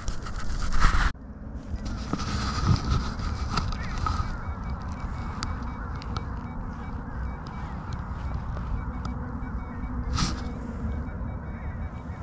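A Minelab Manticore metal detector giving faint, thin, steady tones while a target reading 35 is pinpointed and dug. A brief loud scuffing noise comes in the first second, and a few short knocks and scrapes follow over a steady background noise.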